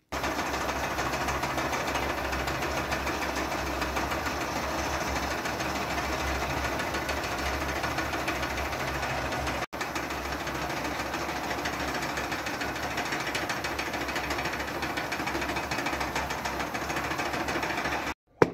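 Several small electric wool-spinning machines running together: a steady motor hum with a fast, even rattle, with a momentary break about halfway through.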